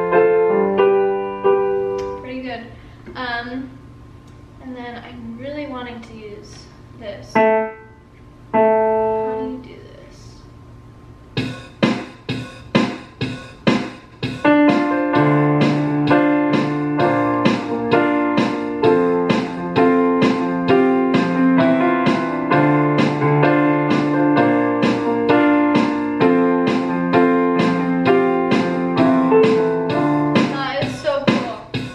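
Donner DEP-20 digital piano played through changing sounds: held chords at first, then a wavering, vibrato-like tone, then a few held notes. From about eleven seconds in it plays a steady stream of fast repeated struck chords.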